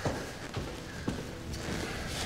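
A few footsteps on a hard floor, with sharp clicks near the start and about a second in, over faint background music.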